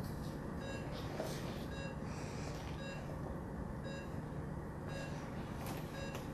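Patient monitor's pulse oximeter beeping with the pulse: short, high beeps about once a second over a low steady hum, with a few soft hissing rushes between them.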